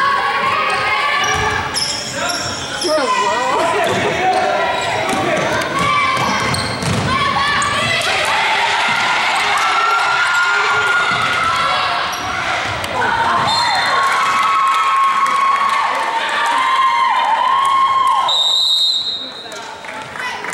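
Basketball game on a gym floor: a ball bouncing on the hardwood and voices calling out over play, ended by a referee's whistle blast about a second and a half before the end.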